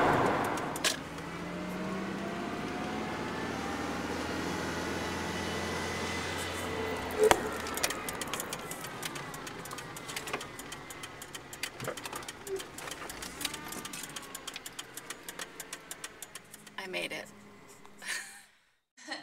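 Road and engine noise inside a moving car's cabin, with a sharp knock about seven seconds in. After that the low hum drops away and the sound is quieter, broken by many small clicks and taps.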